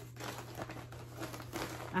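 Continuous crinkling rustle of laminated paper cards and a plastic bag being handled and sorted through.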